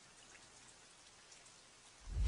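Near silence: a faint, even hiss with scattered soft ticks, slowly swelling, like distant rain.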